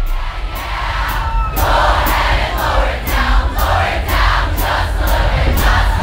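Large outdoor concert crowd cheering and shouting in time with a steady beat of about two hits a second, while the live band's full drumming drops out. The crowd swells louder about one and a half seconds in.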